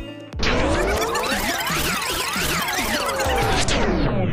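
A tape-rewind sound effect: a dense rushing whoosh with pitches swooping up and down in waves. It cuts in about a third of a second after a beat-driven music track stops, and thins out near the end.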